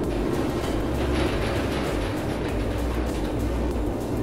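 Steady rushing noise of storm wind and heavy seas with a low rumble, under background music.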